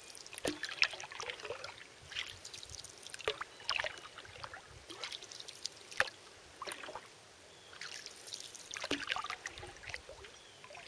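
Canoe paddle dipping and pulling through calm water. Small irregular splashes and drips come off the blade, with a light trickle of water between strokes.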